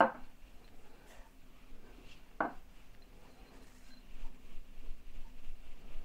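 Small glass spice jars being handled over a stainless steel mixing bowl and a wooden cutting board, with a sharp clink at the start and another about two and a half seconds in. Quieter scraping and handling sounds fill the gaps.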